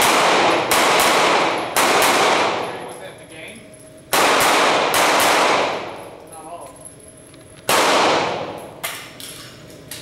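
Pistol shots fired during a USPSA stage at an indoor range: about six loud shots in short groups with pauses of a couple of seconds between them, each ringing on in the hall's echo.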